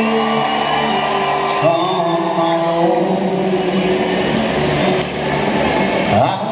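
Acoustic guitar played live on stage, with sustained notes ringing under a slow accompaniment.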